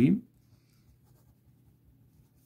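Ballpoint pen writing on notebook paper, a faint scratching of the tip on the page, after a spoken word trails off at the very start.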